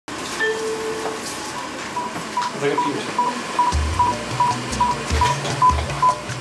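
Medical patient monitor beeping: short high beeps at an even pace of about two and a half a second, the quick rhythm of a newborn's pulse, with a few low thuds in the second half.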